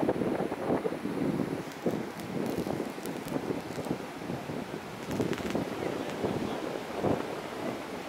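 Wind buffeting the microphone in uneven gusts, over the wash of surf breaking on the beach.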